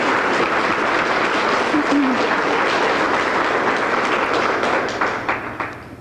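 Audience applauding, a dense steady patter of hand claps that fades away near the end.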